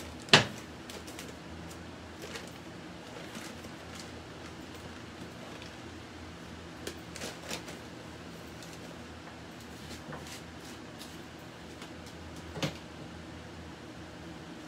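Kitchen clatter from work at a counter: a sharp knock about half a second in, then a few lighter clicks and a knock near the end, over a steady low hum.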